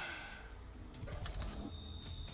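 Quiet, low ambient background sound of an online slot game, with a faint bird-like call in it.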